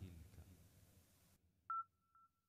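Mostly near silence, then a short electronic beep at a single pitch about 1.7 s in, trailing into a faint steady tone at the same pitch.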